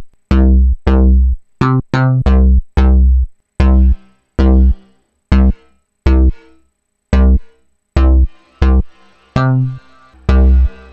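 Xfer Serum software synthesizer playing a saw-wave patch through a 24 dB low-pass filter. It plays short plucked notes with a deep bass in a quick, uneven rhythmic pattern. From about three and a half seconds in, a reverb tail starts to fill the gaps between the notes.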